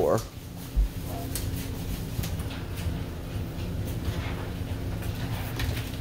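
A back door being opened to trip an armed alarm system's door sensor: a short thud about a second in, over a steady low hum.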